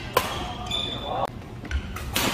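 Badminton rally on a wooden court: a sharp racket hit on the shuttlecock just after the start, with sports shoes squeaking on the floor in between, and more strokes near the end.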